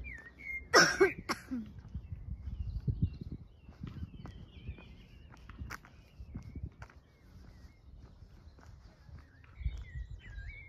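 Footsteps walking along a paved park path, with small birds chirping now and then. A short, loud burst with two peaks comes about a second in.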